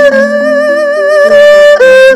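Erhu bowing a held melody with wide vibrato, sliding down and back up near the end, over a lower accompaniment of short stepped notes.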